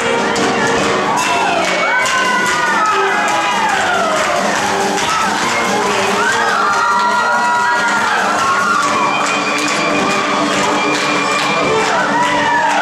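A crowd whooping and cheering over instrumental music from a stage-musical dance number, the whoops rising and falling in pitch throughout.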